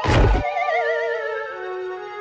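Cartoon sound effect: a sudden hit, then a long wavering tone that slides steadily downward, like a falling whistle with vibrato.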